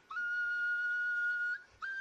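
A steady, high whistle-like tone that slides up briefly at its start and then holds one pitch for about one and a half seconds. It cuts off shortly before the end and briefly starts again.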